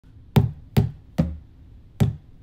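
Three sharp percussive thumps about 0.4 s apart, a rhythm being tapped out by hand.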